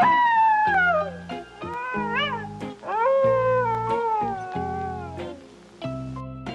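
Three meow-like animal calls over background music with low held notes: a long call falling in pitch, a short call that rises and falls about two seconds in, then another long falling call.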